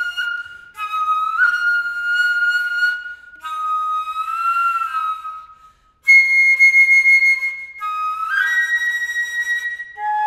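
Solo concert flute playing held notes in short phrases with brief breaks between them. One note bends up and back down, and after a short silence about halfway through comes a louder, higher held note.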